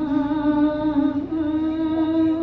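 A woman singing one long held note, steady in pitch with slight wavers and a small step up about a second in.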